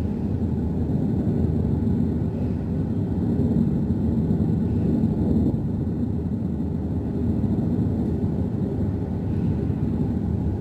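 Steady low rumble on the open deck of a patrol ship at sea: the ship's engine running, with wind on the microphone.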